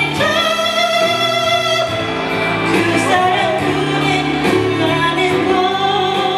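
A woman singing through a handheld microphone over instrumental accompaniment, holding a long wavering note for about the first two seconds and then moving into shorter phrases.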